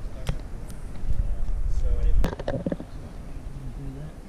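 A low rumble on the microphone that builds and then drops away a little past halfway, with a few sharp knocks and faint, indistinct voices.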